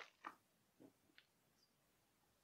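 Near silence, with a few faint mouth clicks and lip smacks as a mouthful of lager is tasted.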